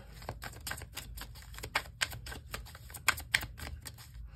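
Tarot cards being shuffled by hand: a run of irregular quick clicks, several a second.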